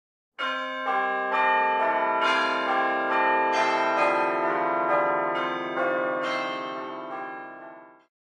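Ringing bell tones, a new note struck about every half second and each left to ring on, overlapping into a held chord that fades out near the end.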